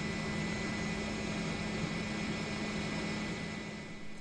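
Steady drone of a helicopter's engine and rotor with hiss, easing slightly near the end.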